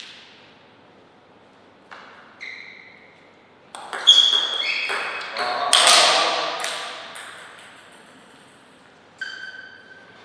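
Table tennis ball pinging off rackets and the table in a short rally: a run of sharp, ringing clicks, loudest and fastest around the middle, then one last ping near the end.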